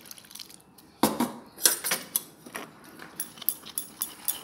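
A metal spoon beating gram-flour batter in a glass bowl, clinking against the glass in quick, irregular strokes that start about a second in.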